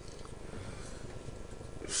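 Low, steady room noise of a large auditorium full of seated people, faint and even, with no distinct events.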